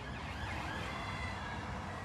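Emergency vehicle siren wailing faintly, its pitch gliding, over a low background rumble.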